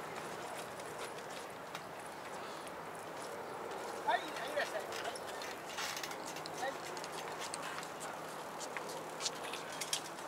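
Outdoor background of distant people's voices, including a few high calls about four to five seconds in, with scattered light clicks and knocks later on.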